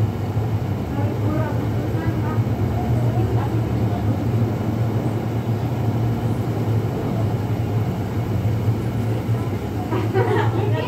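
A steady low hum runs throughout, with faint voices talking in the background during the first few seconds.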